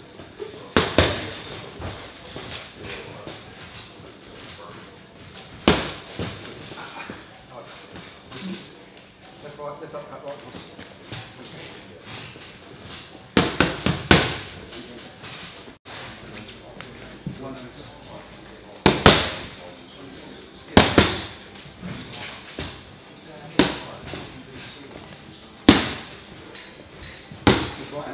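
Boxing punches landing on pads: sharp smacks, singly or in quick one-two pairs, every few seconds.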